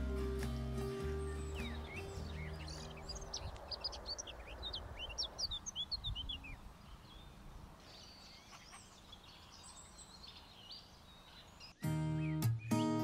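Small birds chirping and singing in outdoor ambience, a dense run of quick high calls in the middle that thins out after about seven seconds. The tail of a song fades out at the start, and acoustic guitar music begins right at the end.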